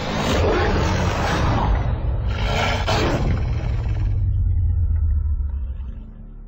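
Film-trailer sound effects of a werewolf attack: a loud roar over a deep, steady rumble, with a second roaring burst about two and a half seconds in. The sound then dies away just before the end.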